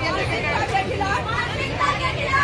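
Several people talking at once, voices overlapping in chatter, over a steady low hum.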